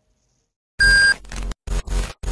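Silence, then about three quarters of a second in a loud electronic beep sound effect with a high steady tone, lasting about a third of a second. Choppy clips of sound follow, cutting in and out abruptly.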